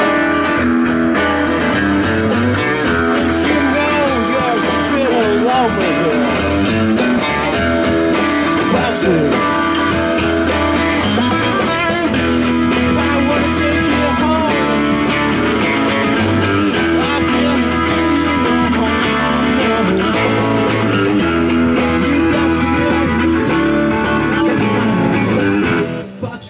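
Live blues-rock band playing: an electric guitar leads with notes that bend in pitch, over strummed acoustic guitar, bass and drums.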